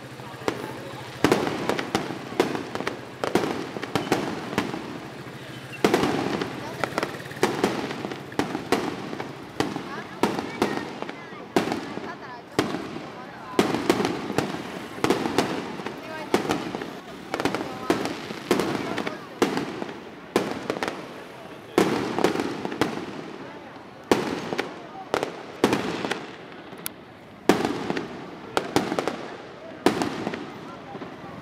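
Aerial fireworks going off overhead: an irregular run of sharp bangs, some in quick clusters, with short lulls between volleys.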